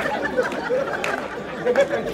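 Chatter of several overlapping voices from a studio audience and performers, with no single clear speaker.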